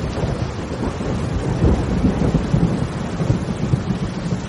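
Heavy rain pouring with deep, rolling thunder rumbling underneath.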